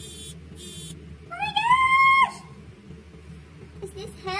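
A person's high-pitched squeal: one long call, starting about a second in, that rises and then holds before cutting off abruptly, after two short very high squeaks at the start.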